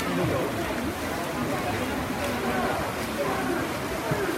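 Indistinct overlapping voices of spectators and officials in an indoor swimming hall, over a steady wash of reverberant hall noise.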